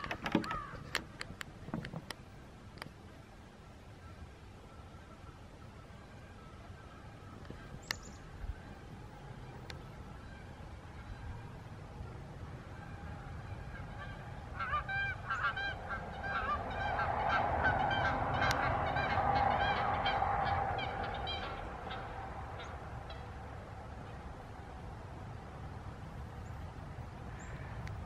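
Canada geese honking: a run of repeated honks that starts about halfway through and goes on for several seconds before fading.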